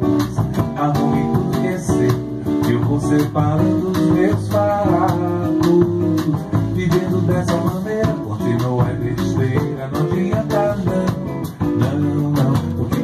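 Bossa nova band playing an instrumental passage: acoustic guitar (violão) and upright double bass carry the tune and harmony, over light drums keeping a steady pulse.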